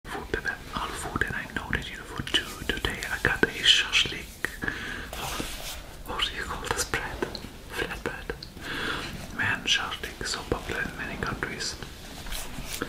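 A man whispering close to the microphone, with small clicks and handling noises as he turns a flatbread-wrapped shashlik in his hands.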